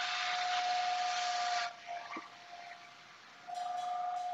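Worx 20-volt cordless blower running, a steady high motor whine over rushing air, blowing water off a metal tray. It shuts off a little under two seconds in and starts up again near the end, less loud at first.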